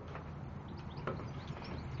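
Faint footsteps and a few light knocks from someone walking, over a low steady hum.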